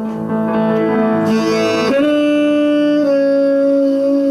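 A live jazz quartet playing: tenor saxophone holding long notes over double bass and piano. The saxophone moves to a new note about two seconds in and again about a second later.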